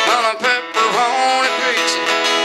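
A man singing live to his own strummed acoustic guitar, with sung notes sliding in pitch near the start and about a second in.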